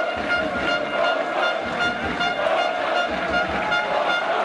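Football supporters in the stand making a din of celebration: a pulsing horn tone over chanting, with steady drumbeats a few times a second.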